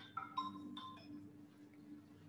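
A faint run of short electronic notes at different pitches, like a device chime or ringtone, in the first half. A steady low electrical hum runs underneath.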